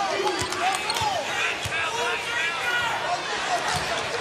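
Basketball sneakers squeaking on a hardwood court in repeated short chirps, with a ball being dribbled, as players move during live play.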